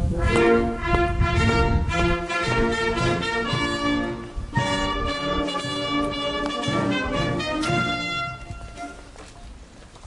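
Brass band music playing, with sustained chords and changing notes, fading out near the end.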